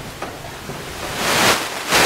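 Marker writing on a whiteboard: scratchy strokes, a longer rough stretch starting a little over a second in.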